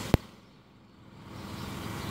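A single sharp click just after the start, then a faint low engine rumble of a distant vehicle that fades almost to nothing and slowly returns.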